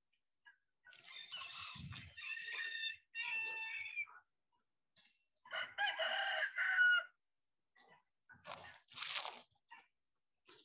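Rooster crowing twice: a long multi-part crow starting about a second in and a second, shorter crow around the middle. A brief rustle follows near the end.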